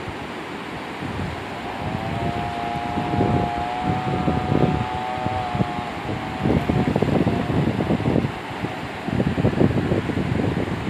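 Fast river water rushing over rapids, with wind gusting on the microphone. From about two seconds in, a steady high tone with overtones is held for about five seconds, then fades.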